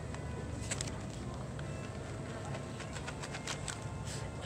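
Handling noise: scattered crinkles and clicks, one about a second in and a quick run of them about three seconds in, over a steady low background hum.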